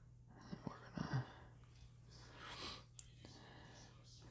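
Faint handling sounds from hands working thin wire and heat-shrink tubing: a few small clicks in the first second, a soft rustle about halfway through, and another click near the end.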